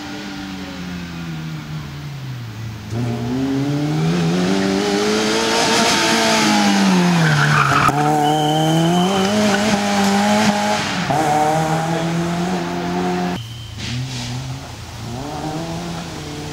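Fiat Cinquecento rally car driven hard round a tight course, its engine revving up and dropping back again and again as it accelerates and slows for corners. A brief high squeal comes about eight seconds in. The engine note breaks off abruptly a little after thirteen seconds and picks up again.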